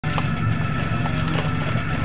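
Turbocharged 2000 Toyota Celica GT's four-cylinder engine idling steadily while warming up, heard from inside the cabin.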